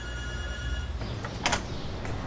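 A door intercom buzzer sounding one steady electronic tone for just under a second, followed about half a second later by a single click.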